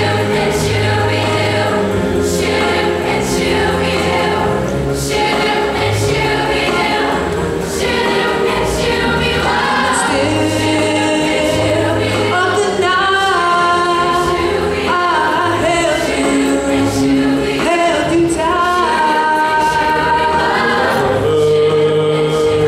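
A mixed-voice middle school show choir singing in full voice, with low accompaniment notes and a steady beat under it.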